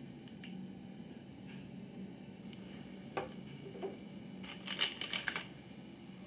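Hands handling small plastic glue tubes and their packaging: a few light clicks, then a brief burst of plastic rustling and clicking about four and a half seconds in, over a faint steady hum.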